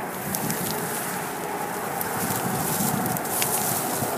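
Clothing rubbing and rustling against a handheld camera's microphone as it is carried, a steady scratchy noise with scattered sharp crackles.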